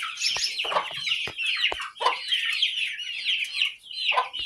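A barn flock of chickens, young chicks among them, calling without a break: many short, high-pitched peeps and clucks overlapping. A few sharp knocks come in the first two seconds.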